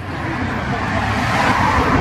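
A vehicle passing on the street: its rush of tyre and road noise grows steadily louder over the two seconds.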